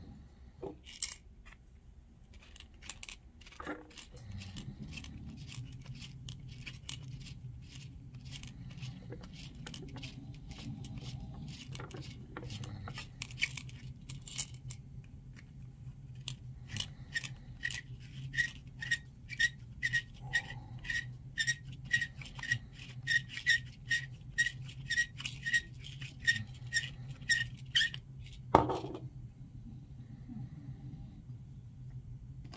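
Hand deburring and chamfering tool scraping .338 Win Mag brass cases in short strokes, settling into an even run of about two strokes a second with a faint metallic ring in the second half. A steady low hum runs underneath from about four seconds in, and a single louder knock comes near the end.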